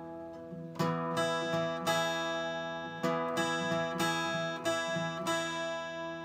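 Twelve-string acoustic guitar fingerpicked over a ringing chord. The first pluck comes under a second in, then a steady repeating pattern of plucked notes in which the thumb strikes a bass string along with each finger and an extra thumb note is thrown in.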